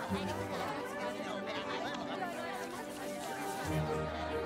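Many voices chattering at once over background music, with a low bass note at the start and again near the end.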